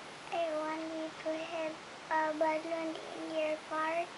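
A young child singing in a high voice, a run of short phrases of long, held, fairly level notes.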